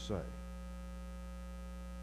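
Steady low electrical mains hum with faint even overtones, heard plainly once the word at the start ends.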